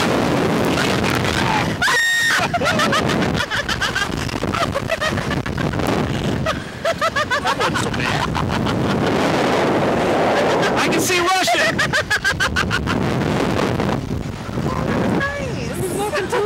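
Two riders on a Slingshot reverse-bungee ride screaming and yelling through the launch and bounces, with high held screams near the start and rapid chopped cries later, over a constant rush of wind on the onboard microphone.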